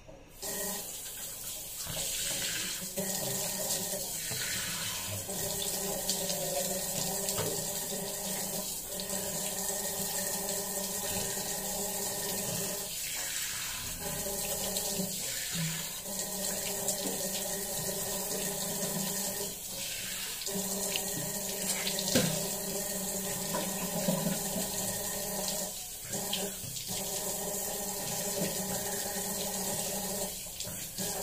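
A water tap running steadily into a bathroom sink, turned on right at the start, with irregular splashes as a face pack is rinsed off with the hands under the stream.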